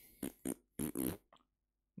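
A man's short wordless mouth and breath sounds while he thinks it over: four quick puffs and low creaky murmurs within about a second and a half.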